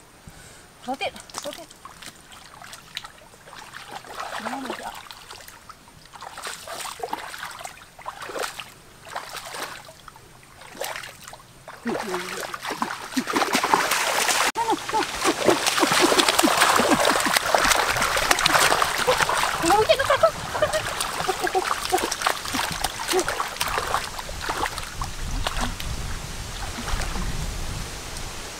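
Hands splashing and sloshing in shallow muddy stream water while groping for fish. Scattered separate splashes at first, then continuous, louder splashing from about halfway through.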